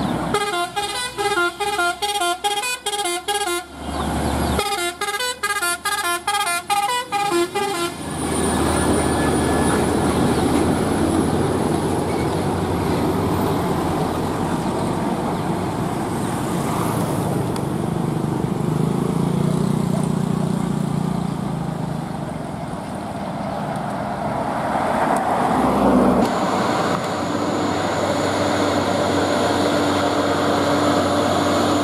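A multi-tone musical vehicle horn plays a fast run of pulsing notes in two bursts of about three and a half seconds each. After that, heavy trucks and other traffic pass by in a steady road noise, swelling about 25 seconds in as a truck comes close.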